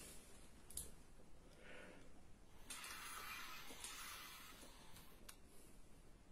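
Near silence: air blown through an English horn with no reed fitted gives only a faint breathy hiss for about two seconds and no note at all. A couple of faint clicks from handling the instrument come before and after it.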